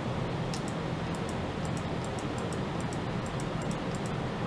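Steady machine-like hum and hiss, with a quick run of faint, light ticks, about three or four a second, starting about half a second in.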